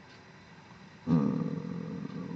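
A man's voice making a long, level hesitation sound, "euh", which starts about a second in.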